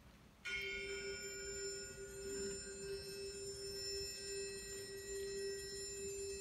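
Bell-like metallic percussion from a wind ensemble, struck about half a second in and left ringing as a sustained chord of several steady tones, high and low, opening the piece.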